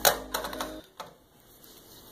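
A quick run of clicks and knocks from a handheld camera or phone being grabbed and moved, bunched in the first second, then only low room noise.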